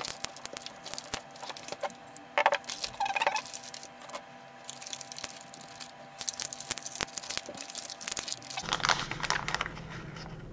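Metallised plastic wrapper of a chocolate wafer bar crinkling and tearing as hands open it, with many small sharp crackles and louder rustles about two and a half and three seconds in.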